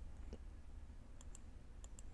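A few faint computer mouse clicks, two close pairs about a second in and near the end, over a steady low hum.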